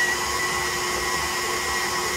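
KitchenAid stand mixer running at a turned-up speed, its flat beater mixing chunks of pumpkin pie and crust in the steel bowl. The motor gives a steady, even whine.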